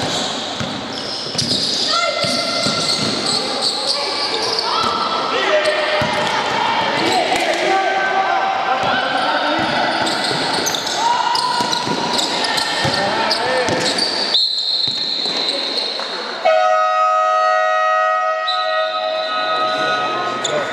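A basketball dribbling on a hardwood court in a large echoing hall, with players' voices calling. About three-quarters of the way in a high whistle sounds, and then a long, steady game horn sounds for about three seconds near the end.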